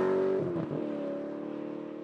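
A car engine's sustained note, holding steady, dipping slightly in pitch about half a second in, then fading out.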